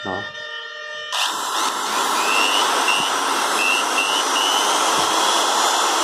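Used Japanese 100 V corded electric drill switched on and running, rising to full speed about a second in and then running steadily with a high motor whine. It runs very smoothly.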